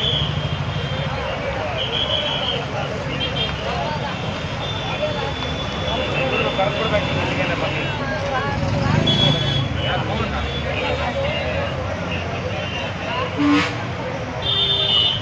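A crowd of people talking over one another, with road traffic running and a few short, high vehicle horn toots. A sharp, louder sound comes near the end.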